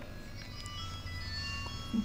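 A faint electronic tune of thin, pure notes at changing pitches, one after another, over a low steady hum.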